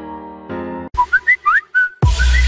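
Background music: a sustained chord cuts off just under a second in, then a short whistled melody of quick gliding notes begins the next track.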